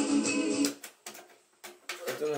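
Music played from a cassette on a Matsui stacking hi-fi, stopped abruptly a little over half a second in. A few sharp mechanical clicks follow as the cassette deck's buttons and door are worked.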